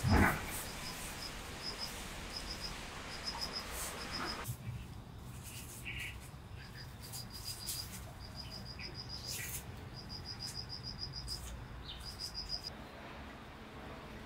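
Crickets chirping in short, quick trains of high pulses that recur every second or so, with a brief loud thump right at the start.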